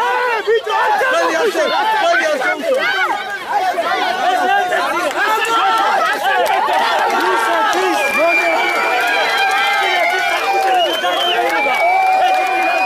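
A crowd of men shouting and yelling over one another in a scuffle, many voices at once and no single clear speaker.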